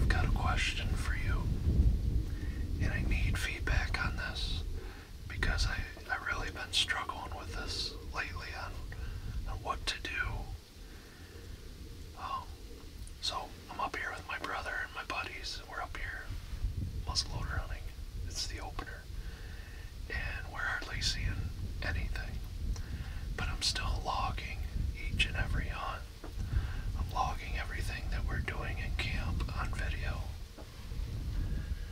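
A man speaking in a whisper throughout, over a steady low rumble.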